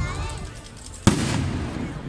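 A single sharp bang about a second in, the loudest sound, with a short ringing tail, over the murmur of crowd voices.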